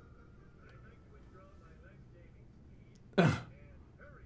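A person clears their throat once, sharply and briefly, about three seconds in, over faint background sound.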